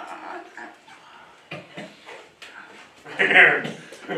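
A man's wordless vocal sounds: short intermittent utterances without clear words, then a loud voiced burst about three seconds in.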